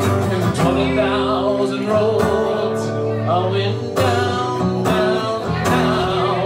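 A man singing while strumming an acoustic guitar, in sung phrases over steady chords.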